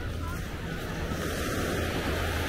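Small ocean waves washing onto a sandy shore, one wash swelling in the second half, with wind rumbling on the microphone.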